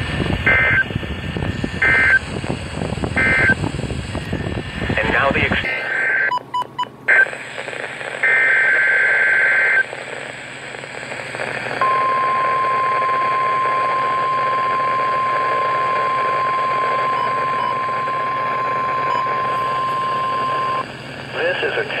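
NOAA Weather Radio weekly test signals through a weather radio receiver's speaker, over static. Three short warbling digital data bursts (the SAME header) come about a second and a half apart, followed by a longer burst. Then the steady single-pitch 1050 Hz warning alarm tone holds for about nine seconds and cuts off.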